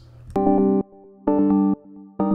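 A synth lead melody with an electric-piano-like tone plays two short chords about a second apart, each cut off sharply. It is played back through the Waves Brauer Motion panning plug-in.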